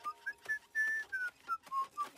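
A cartoon character whistling a carefree tune: a string of about eight short notes, a few of them sliding up or down in pitch.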